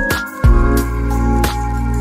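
Electronic background music with a beat and heavy bass; the bass drops out briefly just after the start and then comes back in.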